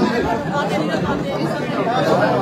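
Indistinct chatter of several people talking at once.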